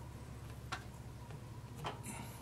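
Two soft, sharp clicks about a second apart from fingers working a strip of plasticine clay onto a sculpted shield, over a steady low hum.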